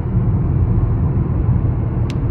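Road noise inside a moving car's cabin at highway speed: a steady low rumble from the tyres and engine.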